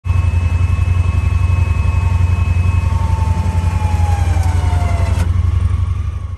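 Honda Pioneer's engine running with a loud, pulsing low rumble, under the high whine of its winch, which falls slowly in pitch and stops with a click about five seconds in.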